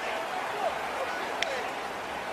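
Field-level ambience of football players celebrating, with short indistinct shouts and voices over a steady background hiss. A brief sharp click comes about one and a half seconds in.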